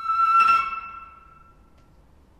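Instrumental music: a flute holding one long high note, which swells with a breathy accent about half a second in and then fades away.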